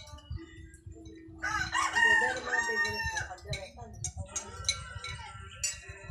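A rooster crowing once, a long call starting about a second and a half in and lasting nearly two seconds, over light clinks of spoons on plates.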